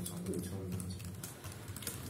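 Scattered light clicks of typing on a computer keyboard, over a steady low hum.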